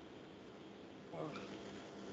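Faint steady background noise on an online call, with a brief faint vocal sound about a second in, followed by a low steady hum.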